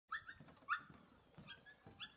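Siberian husky puppy giving a string of short, high-pitched whimpers and yips, about five in two seconds, the loudest just under a second in.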